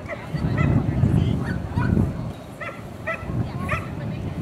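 A dog barking repeatedly in short, high yips, about seven in four seconds, over a low rumbling noise that is loudest in the first two seconds.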